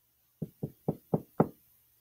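Five quick knuckle knocks, about four a second, rapped on a deck of tarot cards on the table.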